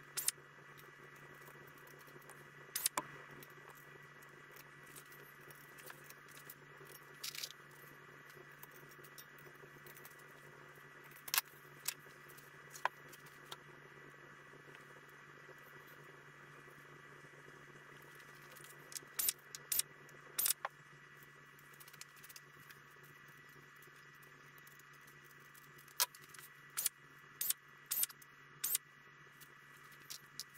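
Sped-up workshop handling sounds: scattered sharp clicks and clinks of aluminium aircraft parts, Clecos and hand tools being picked up and set down, over a steady hum. The clicks come singly at first and in quick clusters in the last third.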